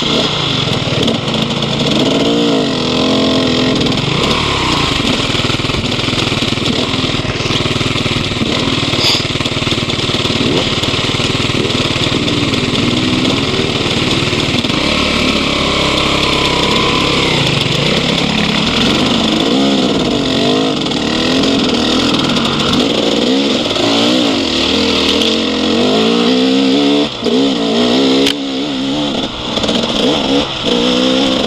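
Dirt bike engine heard from the rider's own bike, its pitch rising and falling over and over with the throttle while riding a rough trail. Under it there is a continuous rushing noise.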